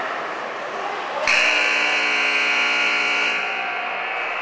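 Ice rink scoreboard buzzer sounding once, a steady harsh buzz lasting about two seconds that starts just over a second in and cuts off abruptly.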